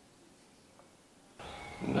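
Near silence at first. About one and a half seconds in, a faint, steady room hiss comes in, and a man's voice starts right at the end.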